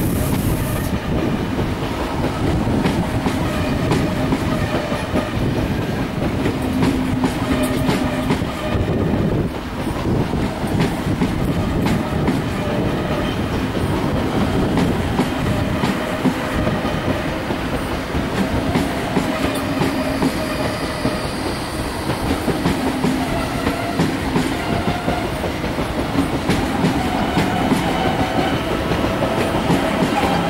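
Two coupled ICE-T electric tilting trainsets rolling past slowly as they depart, wheels clicking steadily over rail joints and points, with a faint steady tone under the running noise.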